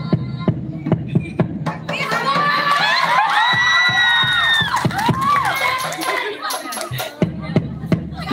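Girls singing a syi'ir, an Islamic devotional poem, together into microphones, holding one long note about halfway through. They are accompanied by hand strikes on a plastic water jug played as a drum.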